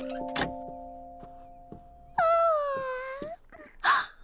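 Two quick knocks at the start over soft, held cartoon music notes that fade away. About two seconds in comes a cartoon girl's loud, long wordless vocal sound, about a second long, with its pitch dipping and then rising, followed near the end by a short vocal sound.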